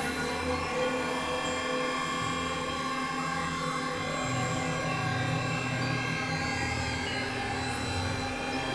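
Experimental electronic drone music: layered, sustained synthesizer tones over a low pulsing drone that shifts up in pitch about four seconds in.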